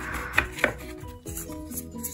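Stiff photo cards handled in a stack: a short rustle, then two sharp taps about a quarter second apart, over faint background music.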